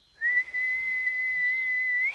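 A person whistling one long, steady, high note through pursed lips, lifting slightly in pitch at the end: a shepherd's recall whistle to call a dog back.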